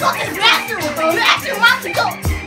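Kids' voices talking and calling out over each other, with music playing underneath.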